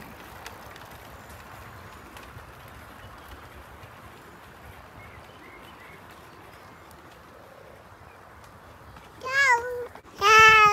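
Faint steady noise of bicycles rolling along a paved path, with no voices. Near the end a young child gives one short, high-pitched squeal.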